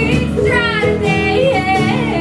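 Live bluegrass band playing: a lead voice sings a melody with sliding, held notes over upright bass and acoustic guitar.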